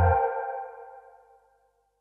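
Final seconds of a deep house track: the pulsing bass cuts out just after the start, and the held synthesizer chord fades away over about a second and a half.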